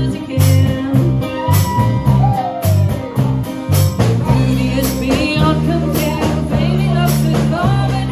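Live band playing a cover song: a woman singing over a strummed acoustic guitar, an electric bass and a drum kit, with a steady beat. The bass plays short repeated notes at first and longer held notes in the second half.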